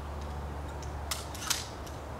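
Two sharp mechanical clicks about a second in, the second louder, with a couple of fainter ticks around them: the 80 lb pistol crossbow being handled and reloaded between shots.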